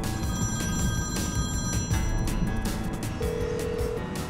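A phone call ringing unanswered over background music, with a steady ringing tone coming in near the end.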